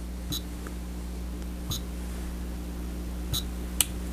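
Chronos GX digital chess clock giving three short, high beeps about a second and a half apart, then a sharp click of its button near the end, over a low steady hum.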